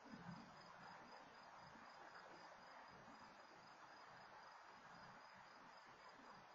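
Faint, high-pitched chirping of crickets, evenly pulsed and steady, over a faint low background hum. A brief low sound comes just after the start.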